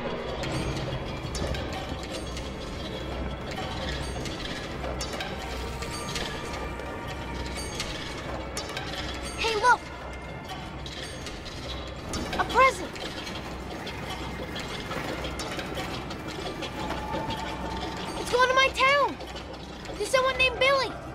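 Conveyor-belt machinery clattering and whirring steadily, with ratchet-like clicking and a low regular pulse underneath.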